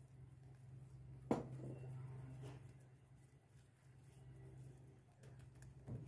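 Red silicone whisk beating eggs and powdered sugar in a glass bowl, faint, with one sharp knock of the whisk against the glass about a second in and a few lighter taps later. A steady low hum runs underneath.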